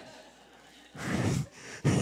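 A man laughing breathily into a handheld microphone: a short burst of breath about a second in, then a louder laugh near the end.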